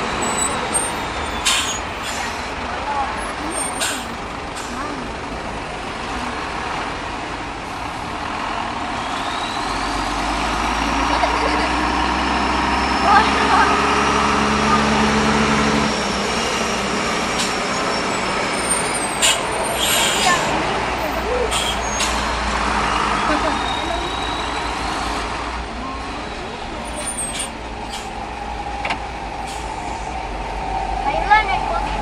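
Heavy vehicles in slow stop-and-go traffic heard from inside a following car: engines running low, with a deep engine note that grows about ten seconds in and fades near the middle. A high whine rises and falls twice, and short sharp hisses like air-brake releases come now and then.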